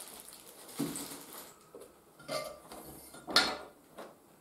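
Small loose parts being handled in a hard plastic tool case: a bag of bolts set down and accessories lifted out, giving a few short clinks and knocks, the loudest about three and a half seconds in.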